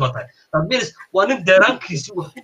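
Only speech: a man talking, with two short pauses.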